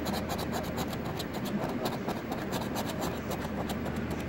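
A coin scratching the coating off a lottery scratch-off ticket in quick, steady repeated strokes.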